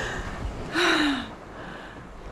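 A woman's short, breathy exclamation, falling in pitch, about a second in, as she wades barefoot into the sea, over wind on the microphone.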